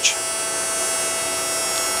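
Steady machine hum with several faint, steady high tones running under it, from fans and powered-up equipment.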